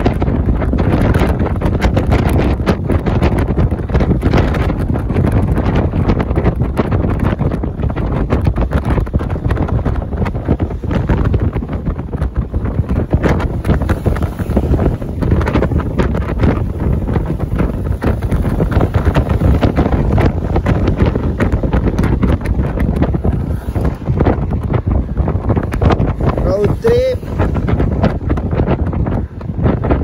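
Heavy wind buffeting on the microphone of a camera riding on a moving vehicle's roof, over a steady rumble of road and engine noise. About three seconds before the end a brief pitched sound rises and falls.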